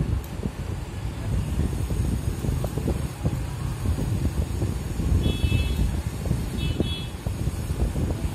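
Continuous low rumbling background noise, with two short high-pitched tones about five and seven seconds in.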